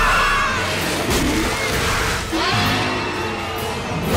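Dramatic background music from a cartoon score, with short gliding sound effects mixed in.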